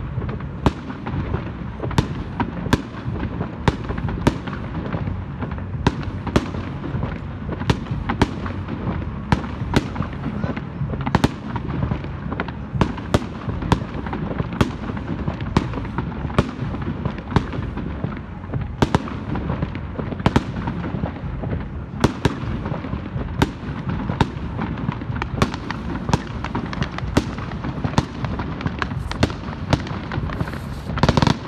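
Fireworks display: a steady stream of sharp cracks and bangs, one or two a second, over a continuous low rumble.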